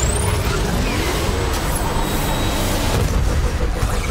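Film trailer sound-effects mix: a loud, steady rushing noise over a low rumble, crossed by a few brief whooshing glides.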